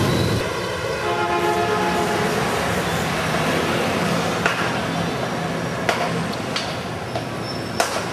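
Busy street traffic: cars and motorbikes running, with a long, steady vehicle horn sounding for about two and a half seconds near the start. A few sharp clicks come later.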